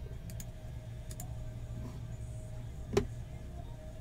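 Steady low room hum with a faint held tone. A few small faint clicks come in the first second or so, and one sharper click or tap comes about three seconds in.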